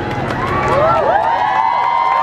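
Crowd cheering, many voices yelling in long rising-and-falling calls that swell about half a second in.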